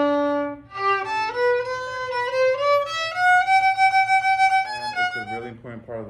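Solo violin being bowed: a long held low note, then a melodic run of short notes climbing to a long held high note and stepping back down.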